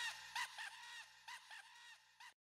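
A laugh carried on by a delay-echo effect, fading out: short pitched repeats a few tenths of a second apart, each fainter than the last.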